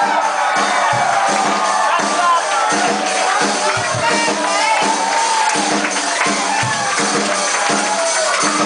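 A live band playing loud amplified music with a steady drum beat and a lead line that bends up and down in pitch, with crowd noise underneath.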